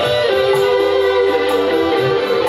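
Live dangdut koplo band playing an instrumental passage, with a guitar carrying the melody.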